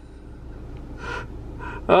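A person's two short breathy exhalations, like a sigh or gasp, about a second in and again just before the end, over a low steady hum.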